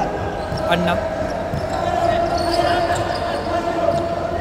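Basketball being bounced on a hardwood indoor court during live play, with the sounds of players moving, in a large hall.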